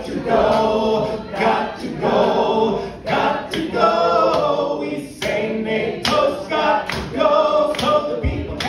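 A group of voices singing a song together without guitar, with hand claps in the second half.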